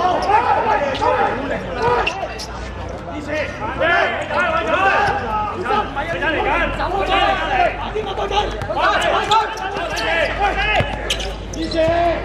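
Players and spectators shouting and calling out across a small-sided football match, with several sharp thuds of a football being kicked and bouncing on the hard court.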